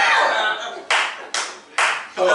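A person clapping hands three times, evenly spaced about half a second apart, in a small room.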